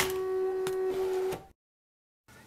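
Cricut Expression electronic cutting machine running, a steady motor whine with a few light clicks, which stops suddenly about one and a half seconds in, followed by dead silence.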